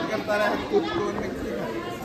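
Chatter of several voices talking over one another on a railway platform, no single speaker close to the microphone.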